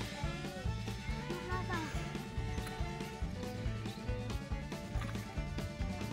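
Background music with a steady, repeating bass beat and held notes.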